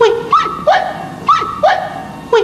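A dog barking: five loud, sharp barks about a third of a second apart, with a short pause after the third, alternating between a higher and a lower pitch.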